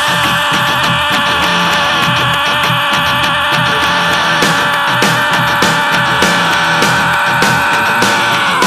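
A man's long screamed note held steadily on one pitch, driven hard and unbroken, over a rock instrumental backing track with drum hits.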